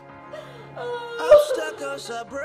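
Background film music with a drawn-out wailing voice over it. A sudden loud hit comes a little past halfway.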